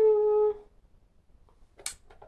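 A woman's short closed-lipped "mmm" hum, held on one steady pitch for about half a second: a thinking hum while she weighs up an answer. A brief hiss follows near the end.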